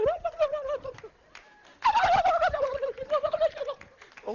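A man's voice giving long, wavering mock wails: one trails off about a second in, and a second starts just before two seconds, sliding down in pitch and held for about two seconds.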